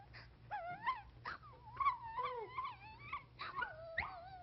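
High-pitched cartoon crying: a voice sobbing and wailing in short, wavering cries that rise and fall, one after another.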